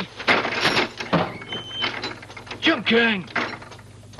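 A rapid mechanical rattle of clicks in the first second or so, followed by a short falling vocal sound near three seconds.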